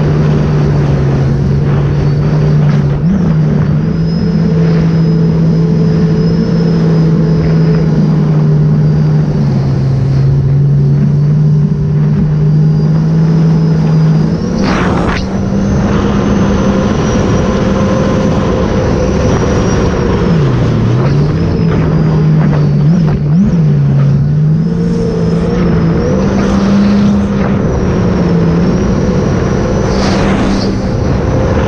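Sea-Doo RXP-X 300 jet ski's supercharged three-cylinder engine running at a steady cruise, its pitch stepping up and down as the throttle is eased and opened, with a few brief dips in the second half. Wind and water noise on the microphone.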